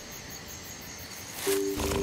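Crickets chirping in a fast, even rhythm over a low hiss. About a second and a half in, a held musical chord comes in and grows louder.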